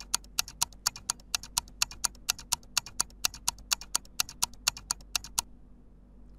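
Countdown-timer ticking sound effect: rapid, even clock-like ticks, about four or five a second, that stop suddenly about a second before the end.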